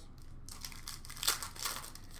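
Foil wrapper of a trading card pack crinkling as hands handle it: irregular crackly rustles starting about half a second in.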